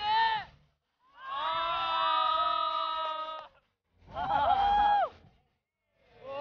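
Sung vocal phrases from a Chinese-language song, in short bursts broken by complete silence. In the longest phrase, several voices hold notes together.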